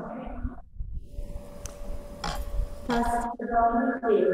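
Voices talking over a video-call connection, with a steady single tone held for a second or two in the middle.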